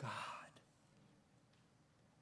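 A man's short breath, a soft hiss lasting about half a second, followed by near silence with only faint room tone.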